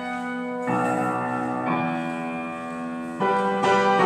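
Solo piano playing slow, sustained chords, with new chords struck about a second in, near the middle and again near the end, each left to ring.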